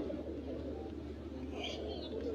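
A pause in speech filled by a steady low hum and faint background noise, with a brief faint high-pitched sound near the end.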